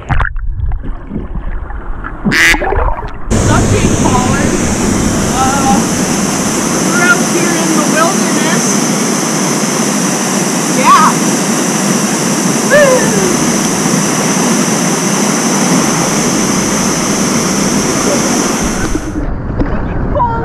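Water sloshing and gurgling around a half-submerged action camera. About three seconds in, this gives way to the steady, even rush of a waterfall, with a few faint distant voices calling over it.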